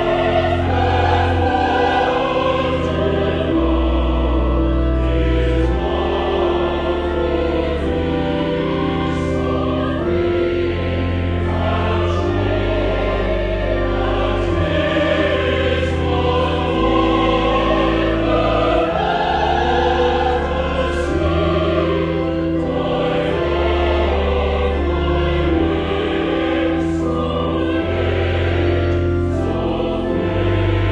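Choir singing with pipe organ accompaniment. Long, held low organ notes change every two seconds or so beneath the voices.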